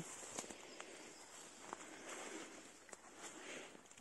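Faint forest ambience: distant birdsong and insects buzzing, with a few soft footsteps and rustles through ferns and grass.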